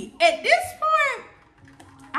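A woman's voice saying a few short words in the first second or so, then a quieter stretch.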